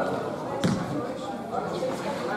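A basketball bouncing once on the sports-hall floor about two thirds of a second in, over background voices in the hall.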